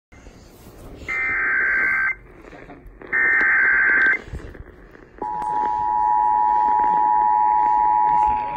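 Emergency Alert System tones from a portable radio's speaker: two one-second warbling data bursts of the SAME header, then, about five seconds in, the steady two-tone attention signal that announces an alert message.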